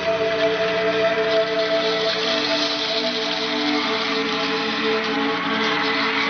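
Live concert music: sustained chord tones held steady, under a noisy haze.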